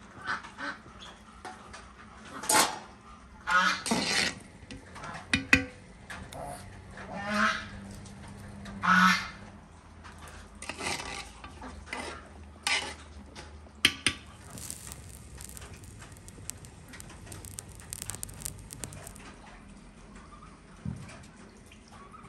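Geese honking: a series of loud calls, one every second or two, for the first fourteen seconds or so, then they fall quiet.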